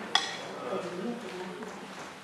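Faint, indistinct voices murmuring in a hall, with one short sharp clink just after the start.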